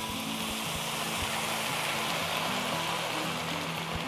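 Beer poured into a hot pan of toasted arborio rice, sizzling and bubbling as it hits the pan and begins to boil off. The hiss builds over the first second or two and eases a little near the end.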